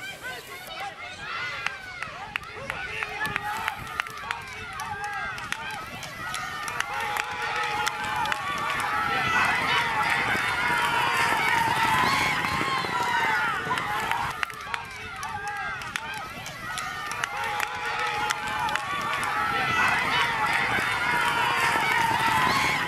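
Crowd of spectators shouting and cheering at a horse race, many voices at once. They grow louder over the first several seconds as the horses come toward the finish, dip briefly past the middle and rise again. Under the voices run the hoofbeats of the racehorses galloping on the dirt track.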